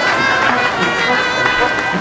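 Background music track with sustained higher tones over a steady low beat, about two to three beats a second.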